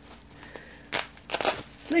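Plastic bubble wrap crinkling as it is handled and pulled open, in two short bursts about a second in and half a second later.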